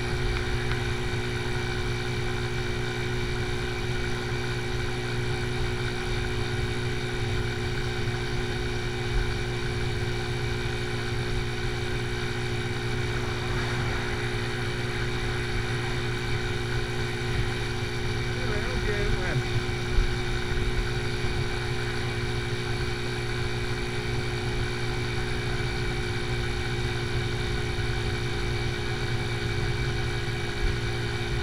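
AJS Tempest Scrambler 125's single-cylinder four-stroke engine running steadily at cruising speed, a constant drone over road and wind rumble.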